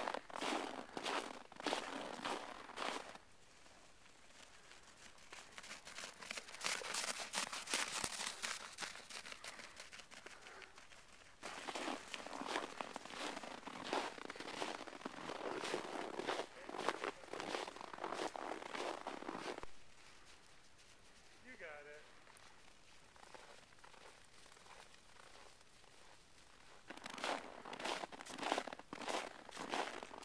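Footsteps crunching in packed snow, in several stretches of walking with quieter pauses between them.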